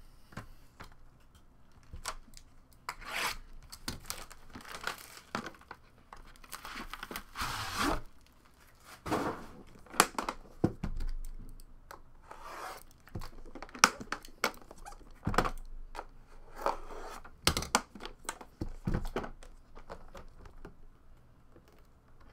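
Plastic wrapping being cut and torn off an aluminium card briefcase with a small blade, crinkling and tearing in irregular bursts, with scattered sharp clicks and knocks from the metal case being handled.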